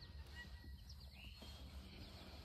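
Near silence with a few faint, short bird chirps, one of them a little longer and curved in pitch just past the middle.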